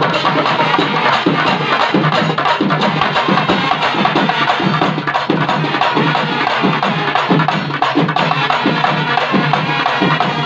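A Sri Lankan papare band playing: trumpets and trombones over a steady drum beat from shoulder-slung double-headed drums.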